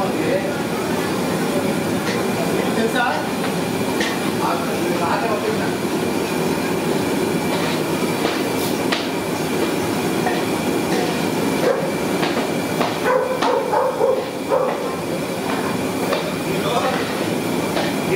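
Gulab jamun dumplings deep-frying in a large karahi of hot oil: a steady, dense sizzle, with a few light clicks. Voices talk in the background for a moment near the middle.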